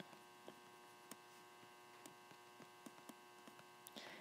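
Near silence: a faint steady electrical hum in the recording, with a dozen or so faint, irregular ticks while digits are being handwritten on the screen.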